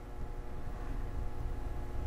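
Quiet room tone: a steady low rumble with a faint hum, and no distinct events.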